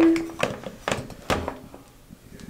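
Hard plastic facial spin brush being hung on a metal wire shower caddy: three sharp knocks, the last and heaviest a thunk about a second in.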